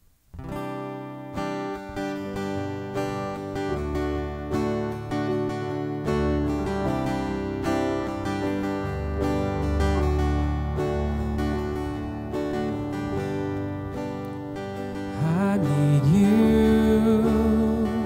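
A live worship band plays a song intro led by strummed acoustic guitar, with low bass notes coming in about four seconds in. A man and a girl start singing near the end.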